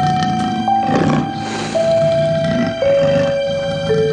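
Background music: a slow melody of long held notes, each lasting about a second, stepping mostly downward in pitch over a soft, sustained accompaniment.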